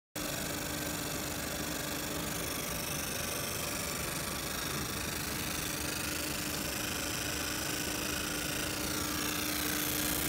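A 100-watt laser marking machine running while it deep-engraves aluminium: a steady hum, with faint high tones that wander in pitch.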